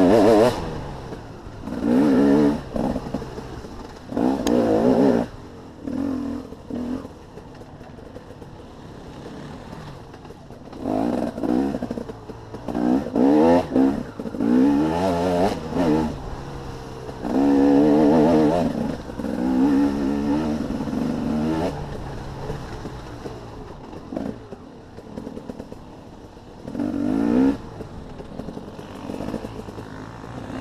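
Off-road enduro motorcycle engine revving in repeated bursts of throttle, its pitch rising and falling with each burst. There are quieter off-throttle stretches in between, the longest about a third of the way in and again near the end.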